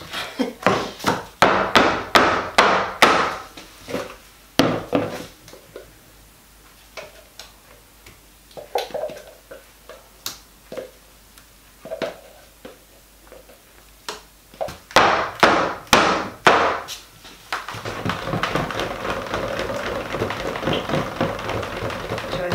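Clusters of sharp knocks and taps as a plastic pouring jug of thick cold process soap batter is rapped against a wooden loaf mould to get the batter out; the batter is thickening too fast. Near the end a stick blender starts running with a steady whirr.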